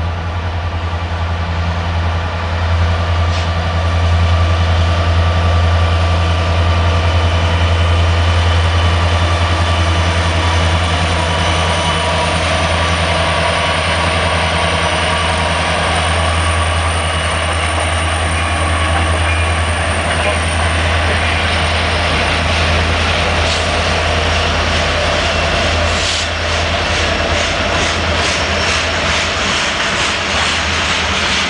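A slow train passing close by: Union Pacific diesel locomotives hauling the unpowered Big Boy 4014 steam locomotive, with a steady low engine drone and rolling wheel and rail noise. It grows louder over the first few seconds, and a run of faint regular clicks comes near the end.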